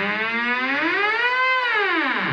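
Background music: a single sustained electronic tone slides smoothly up in pitch, peaks about one and a half seconds in, then starts to fall steeply near the end.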